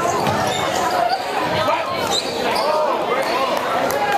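Live high school basketball play on a hardwood gym court: sneakers squeaking in short sharp glides and a basketball bouncing, over steady spectator chatter.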